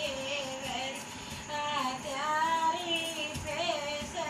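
Dehati Hindi folk song playing: a high-pitched voice sings a wavering melody over light musical accompaniment.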